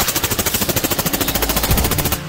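Suppressed full-auto burst from a short-barrelled AR-style rifle fitted with a Gemtech Abyss 7.62 suppressor: a rapid, even stream of shots that starts abruptly and runs for about two seconds.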